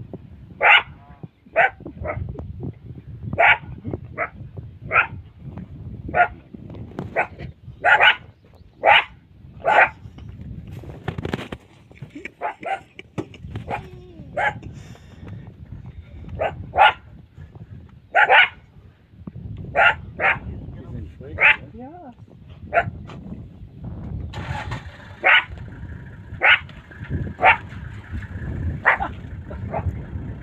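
Cheetahs chirping: short, high-pitched calls repeated about once a second, often in pairs, with a pause of a few seconds near the middle.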